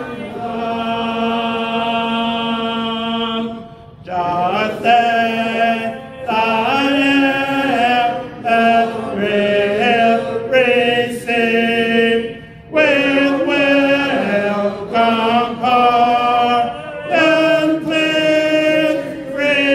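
A man's voice singing unaccompanied in long held notes that step up and down in pitch, with short breaks for breath.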